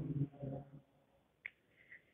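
A mostly quiet pause in a woman's speech, with her voice trailing off at the start and a single short click about one and a half seconds in.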